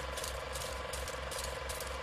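A faint, steady mechanical ticking, about five ticks a second.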